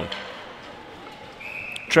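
Quiet ice-rink ambience, then a referee's whistle blows one steady high note about one and a half seconds in, stopping play for an icing call.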